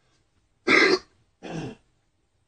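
A person coughing to clear the throat: two short coughs about two-thirds of a second apart, the first loud and the second quieter.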